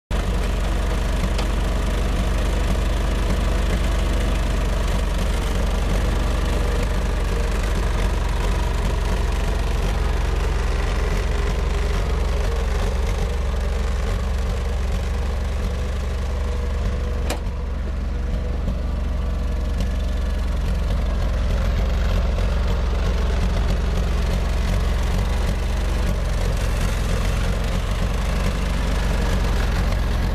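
International Harvester utility tractor's engine running steadily while the tractor is driven about.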